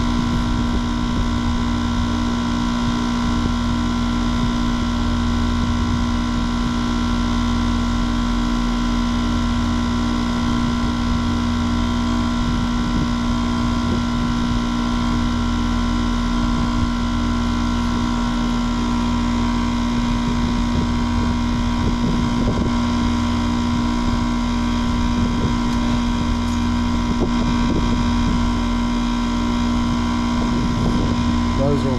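Air-conditioning condenser unit running with a steady hum made of several fixed tones. Its compressor is energized but has failed and is not pumping: discharge and suction sit almost equal.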